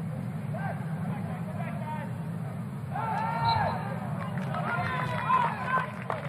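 Field-level ambience of a college soccer match: short shouted calls from players and spectators over a steady low crowd murmur, the loudest shouts about halfway through.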